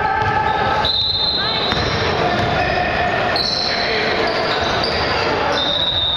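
Basketball being dribbled on a hardwood gym floor, with players' voices in a large, echoing gym.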